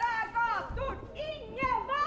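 A woman's raised, high-pitched voice shouting a slogan in Norwegian.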